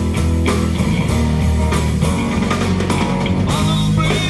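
A live band playing rock music, with guitar to the fore over a steady bass line.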